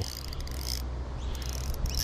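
Insects chirping steadily in the background, with a few faint clicks from a spinning reel as a hooked bream is played on light line.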